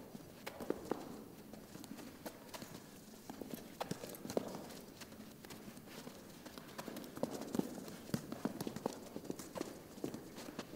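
Two soccer balls being dribbled with little kicks on a carpeted floor: faint, irregular soft taps of shoes on the balls, mixed with footsteps, several a second.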